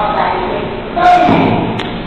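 A person talking, with a dull thump about a second in.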